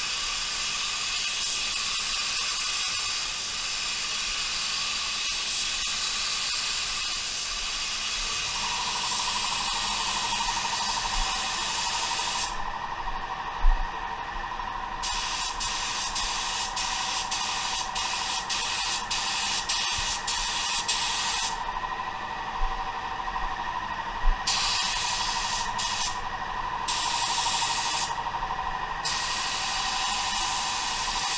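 Gravity-feed spray gun hissing as compressed air at 28 psi atomises primer-sealer. The hiss cuts out briefly several times in the second half between passes, and there is one knock about halfway through.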